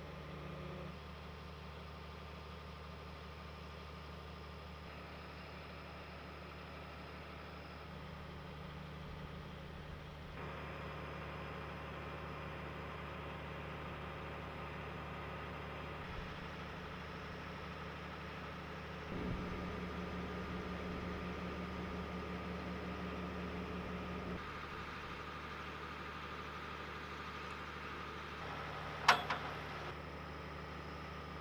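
An M142 HIMARS launcher truck's diesel engine idling steadily, its hum louder for a few seconds past the middle. A single sharp knock sounds about a second before the end.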